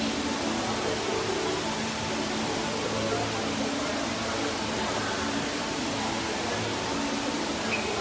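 Steady background hubbub of a busy public place, with faint music or distant voices underneath.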